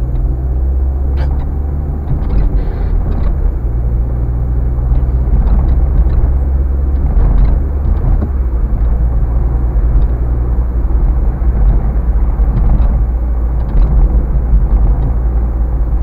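Low steady rumble of a car's engine and tyres heard from inside the cabin while driving, the engine note shifting a little a few times.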